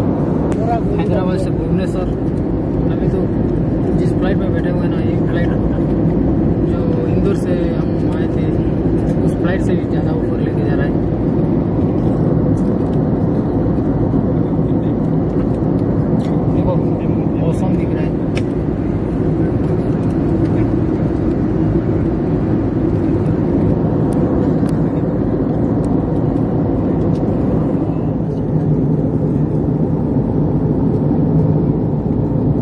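Steady cabin noise of a jet airliner in cruise, heard inside the cabin: a loud, even rumble of the engines and the airflow. Faint voices come through in the first part.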